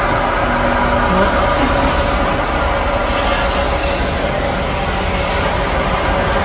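Demolition excavator with a crusher attachment working: its engine and hydraulics running steadily, with a constant hum and rumble.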